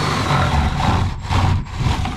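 Cordless drill motor running a spade bit on an extension in wooden studs, a steady whir with grinding from the wood, easing off briefly twice.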